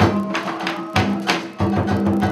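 Funeral ceremony music: sharp percussion strikes about three times a second over held low tones.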